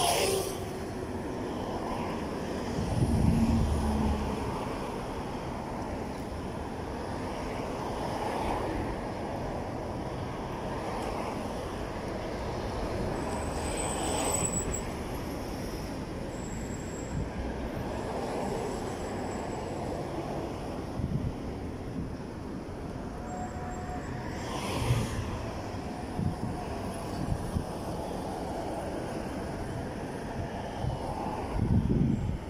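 Road traffic passing a street crossing: a steady rumble of vehicles. A motorcycle goes by at the very start, its pitch dropping as it passes, and a louder, deeper vehicle passes a few seconds in.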